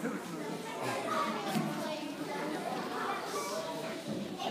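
Many children's voices chattering and calling out at once in a large hall, no single clear talker.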